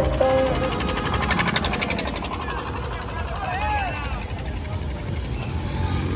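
Procession street noise: vehicle engines running under men's shouted calls, with loudspeaker music from a passing truck fading in the first couple of seconds.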